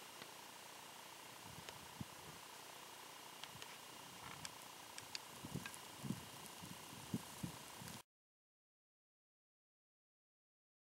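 Faint, steady hiss with a thin, high, steady whine, broken by scattered light clicks and a few soft low bumps that come more often in the second half; about eight seconds in, the sound cuts off to dead silence.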